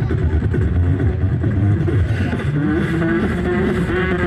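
Live beatboxing into a handheld microphone, amplified through a PA: a dense, continuous low bass with a wavering pitched hum over it in the second half, an engine-like vocal effect.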